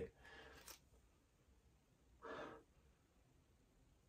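Near silence with faint room tone, broken by one short, soft breath a little over two seconds in.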